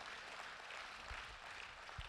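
Faint, even background noise of a church sanctuary through the pastor's microphone feed, with a couple of soft low thumps about a second in.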